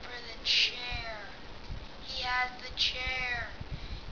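A child's voice making two drawn-out vocal cries that fall in pitch, each beginning with a short hissy burst: sound effects voiced for the fighting figures.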